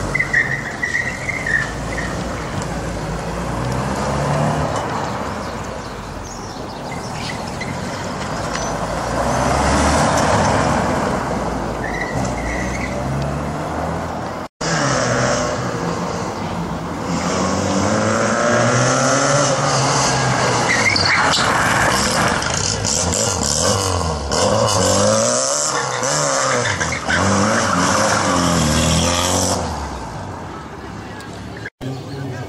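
Car engines revving up and down through tight turns on cobblestones, with short tyre squeals near the start and again a little before the middle. About halfway the sound cuts briefly and another car is heard revving repeatedly, with more tyre squeal.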